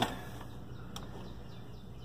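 Quiet room noise with a steady low hum and a single faint click about a second in.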